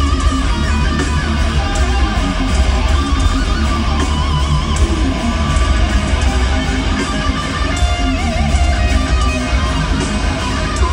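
An extreme metal band playing live at full volume: heavily distorted electric guitars over pounding bass and drums, continuous with no break.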